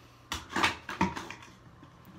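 Clear plastic sample canister, filled with alcohol and a bee sample, shaken by hand with a few quick rattling bursts, then set down on a desk with a sharp knock about a second in and a few lighter clicks.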